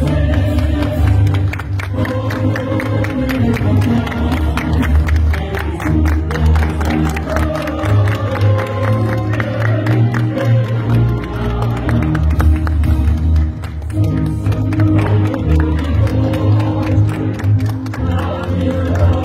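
Music with a heavy, steady bass line, with crowd noise and scattered clapping mixed in.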